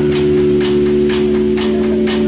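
Instrumental rock band playing live: a sustained chord on bass and guitar rings steadily under drum-kit cymbal strokes about twice a second.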